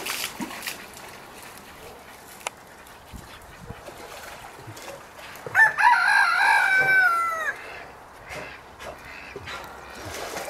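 Faint splashing and sloshing of water in a tub as a bear moves in it. About halfway through comes a loud crowing call from a bird, about two seconds long, that drops in pitch at the end.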